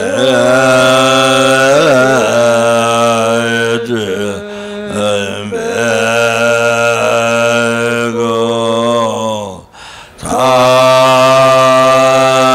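Slow Tibetan Buddhist prayer chant: a low male voice holds long, steady notes, with a short break for breath about ten seconds in.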